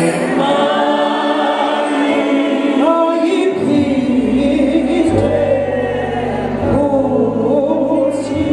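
Church congregation singing a gospel song together, many voices in harmony; a low bass note comes in about halfway through.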